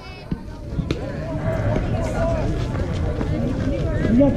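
Spectators and players at a softball game shouting and cheering, several voices at once, growing louder about a second in just after a sharp knock.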